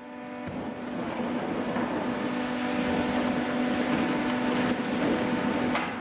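A large cardboard box scraping and rustling against the steel hopper of a horizontal cardboard baler as it is pushed in, with a short knock near the end. Under it runs a steady hum from the running baler.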